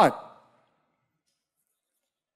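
The last word of a man's speech trailing off into a short breathy tail, then near silence from about half a second in.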